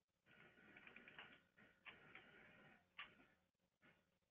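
Near silence with faint scratchy rustling and a few light clicks, muffled as if heard over a phone line.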